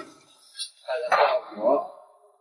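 Kitchen clatter: a meat cleaver set down on a stainless steel tray with a metal clink, and a china plate being handled on the counter.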